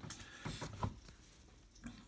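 Trading cards being handled: a few faint light ticks of card stock being moved between the fingers in the first second, then almost nothing.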